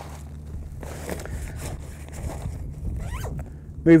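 A zip on a golf bag pocket being pulled, with the rustle of the bag's fabric as its pockets are handled.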